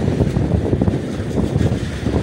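Wind buffeting the microphone on an open boat at sea: a loud, uneven low rumble.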